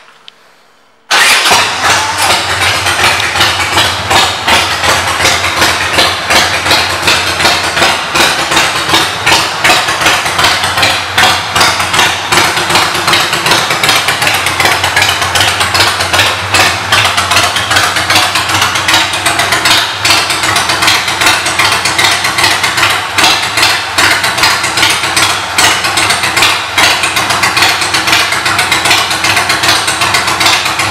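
A 2006 Harley-Davidson Sportster 1200 Custom's air-cooled Evolution V-twin, fitted with Vance & Hines aftermarket pipes, fires up about a second in. It then runs at idle, loud, with a steady pulsing beat.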